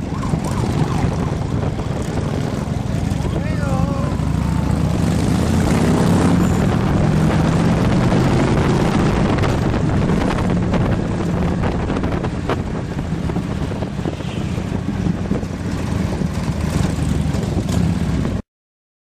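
Harley-Davidson V-twin motorcycle engines running in a group ride, heard from aboard one of the moving bikes, with a steady low rumble that swells a few seconds in. A brief wavering tone sounds about four seconds in.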